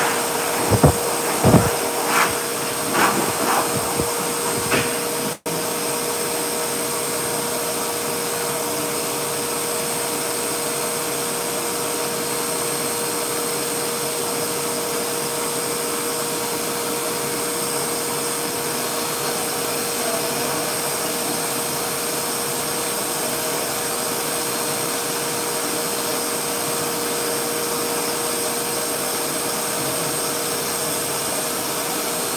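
Dog blow dryer running steadily, a constant rushing of air with a steady whine. A few knocks come in the first few seconds, and the sound cuts out for an instant about five seconds in.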